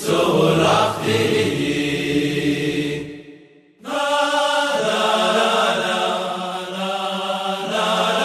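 Music: voices singing long, held notes in a chant-like style. The sound breaks off about three seconds in for under a second, then the singing resumes.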